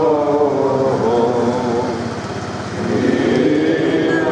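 A group of men's voices chanting an Orthodox hymn together, with a dip about halfway through before the chant swells again, over a steady low hum.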